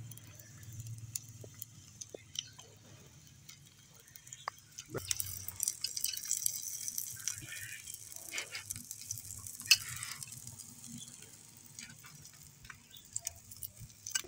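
Chopped onions sizzling faintly in hot mustard oil in an iron kadhai over a wood fire. The sizzle grows stronger in the middle, with scattered small clicks.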